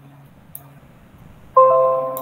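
A bell-like musical chord from a video's intro starts suddenly about three quarters of the way through and rings on, slowly fading. Before it there is only faint room noise and a single soft click.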